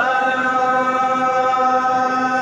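A line of men chanting in unison in the Hawara style of Amazigh folk song, holding one long steady note.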